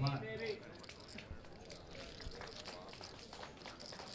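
The tail of a man's commentary, then a quiet card room with faint, scattered clicks of poker chips.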